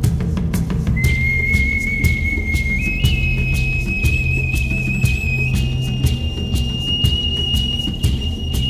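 Background music: a high whistle-like melody of long held notes enters about a second in, stepping up and down in pitch over a steady beat.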